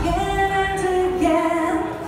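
A woman singing live into a microphone over keyboard backing, holding long sustained notes; the low backing fades out about a second and a half in, as the song comes to its end.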